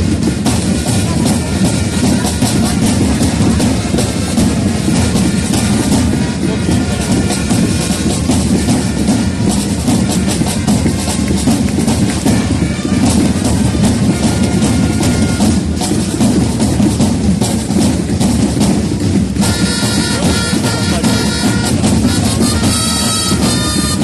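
A corps of parade drums playing a dense, driving beat to accompany flag-throwing. Near the end, wind instruments join with held notes.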